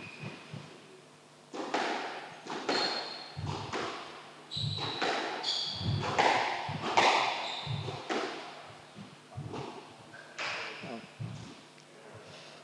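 Squash rally on a glass-backed court: sharp knocks of the ball off rackets and walls, roughly one a second, echoing in the court. Short high squeaks of court shoes on the wooden floor come in between.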